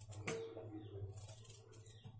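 Faint scraping as a small knife cuts through a piece of raw elephant foot yam held in the hand, with a light tap near the start.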